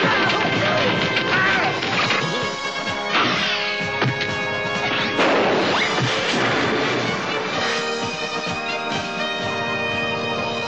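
Animated film soundtrack: music playing under a run of crash and smash sound effects, with several sweeping pitch glides.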